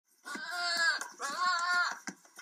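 Two long, wavering bleating calls, one after the other.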